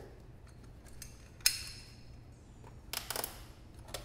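Steel pliers clicking against a vacuum hose and its clamp as the hose is worked off the airbox. There is one sharp click with a brief ring about one and a half seconds in, and a quick cluster of clicks near the end.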